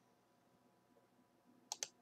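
Near silence, then near the end two quick clicks of a computer mouse in close succession.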